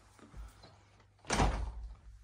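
A door pulled shut with a single thunk just over a second in, after a fainter low knock.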